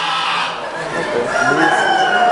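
A rooster crowing: a drawn-out call that rises in pitch, then holds near the end, over the murmur of voices in a busy hall.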